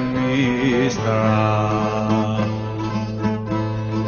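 Cretan folk song: the singer's wavering held note ends about a second in, and the string accompaniment carries on with a steady sustained note between the sung lines.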